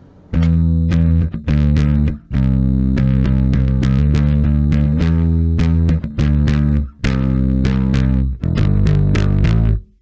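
Home-built Rickenbacker-style bass guitar on its middle humbucker alone, a precision-bass type tone, played through a Sushi Box FX Dr. Wattson (Hiwatt DR103-style) preamp pedal with the gain at noon, slightly dirty. A riff of bass notes in several short phrases with brief breaks, stopping just before the end.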